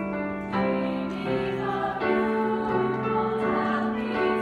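A girls' choir singing in harmony with piano accompaniment, holding long chords that change about half a second in and again about two seconds in.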